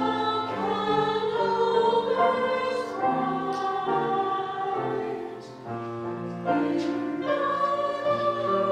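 A mixed church choir singing in parts, with sustained notes that move together from chord to chord. There is a brief breath between phrases about five and a half seconds in, then the singing resumes.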